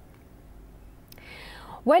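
Low, steady microphone hiss with a faint click about a second in, then a woman's audible breath drawn in just before she starts speaking near the end.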